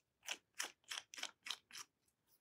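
Cap being screwed onto a bottle of drawing ink: a faint run of about eight short scraping clicks, roughly four a second, as the threads turn.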